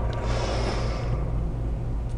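A woman's soft breath out during a strenuous balance exercise, about half a second in, over a steady low hum.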